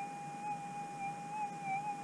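Gold-prospecting metal detector sounding a steady electronic tone, one pitch that wavers slightly and does not stop.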